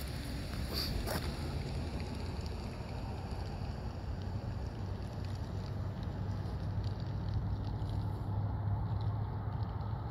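Vehicle engine running steadily, heard from inside the cab as a low hum under road or wind noise, with a couple of brief knocks about a second in.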